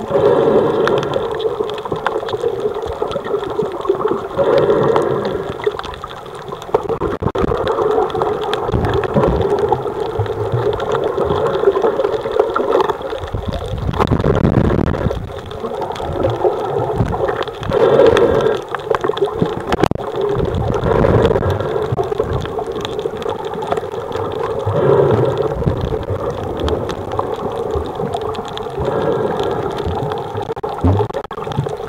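Water moving and gurgling, recorded from under the water, swelling in repeated surges every three to four seconds.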